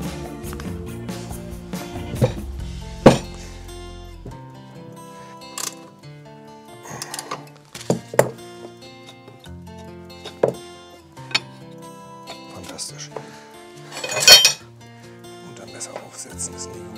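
Background music with steady tones, over which metal parts of a reel-mower cutting unit knock and clank as it is worked on with tools. There are several sharp knocks, the loudest a ringing metallic clank near the end.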